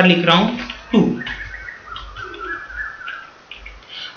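A bird calling faintly in the background: a thin, wavering whistle lasting about two seconds, starting a little over a second in.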